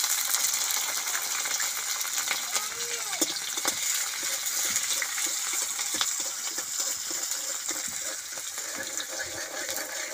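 Chopped vegetables frying in hot oil in a wok, sizzling loudly and steadily, with a metal spatula clinking and scraping against the wok as they are stirred.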